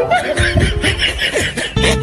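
Short bursts of snickering laughter over background music; the steady music comes back to the fore near the end.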